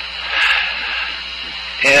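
Steady hiss and low electrical hum of an open headset intercom line, with a brief swell of noise about half a second in.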